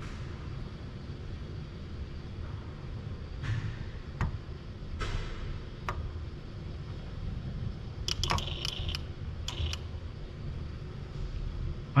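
Steady low hum of the robot cell with a few faint clicks. About eight to ten seconds in comes a cluster of light, sharp metallic clicks and taps from the UR10e robot's tool working at the bolt rack.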